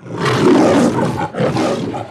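Lion roar sound effect, as on the MGM film logo: two long roars, the second starting about one and a half seconds in.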